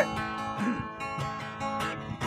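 Acoustic guitar strummed, with chords ringing on between several strokes.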